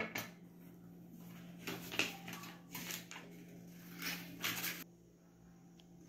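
Paper being handled and cut with scissors: a few soft, irregular rustles and snips, under a faint steady hum.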